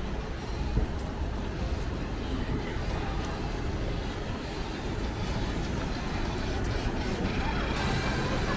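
City street ambience: a steady wash of traffic noise, with faint music and voices mixed in.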